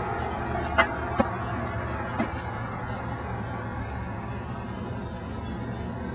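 Steady city background hum of distant traffic, with three short clicks in the first couple of seconds.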